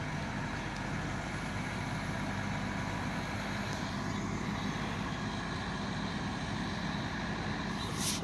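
Fire truck engine running steadily with a low, even hum.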